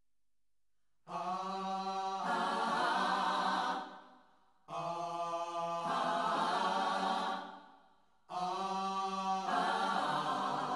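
Music: unaccompanied chanted voices singing three long phrases on held notes, each about three seconds and fading away, with short pauses between them, after about a second of silence.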